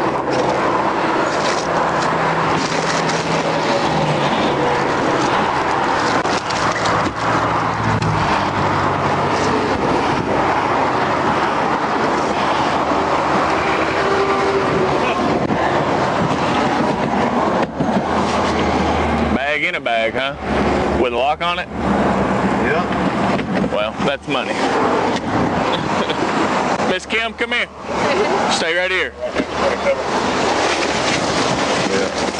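Steady noise of highway traffic passing close by, including tractor-trailers. Several more vehicles sweep past in the second half.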